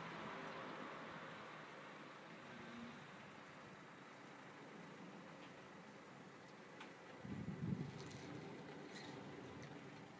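Faint outdoor background noise, easing over the first few seconds, with a louder low rumble for about a second starting about seven seconds in.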